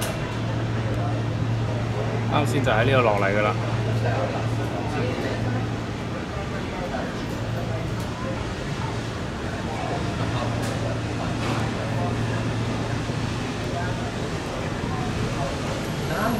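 Voices of people talking in the background over a steady low hum, with the clearest talking about three seconds in.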